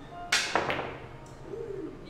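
Pool cue tip striking the cue ball with a sharp click, then about a quarter second later a second click as the cue ball hits an object ball.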